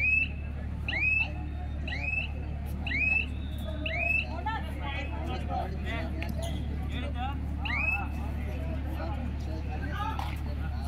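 A short, high chirp that rises and then levels off, repeating about once a second, over scattered voices and a steady low hum.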